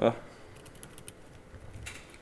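A few scattered keystrokes on a laptop keyboard, with a sharper key click near the end.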